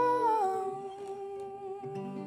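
Closing note of an acoustic song hummed and held, stepping down in pitch about half a second in as the guitar's low notes stop; a soft low note comes in near the end while the sound fades.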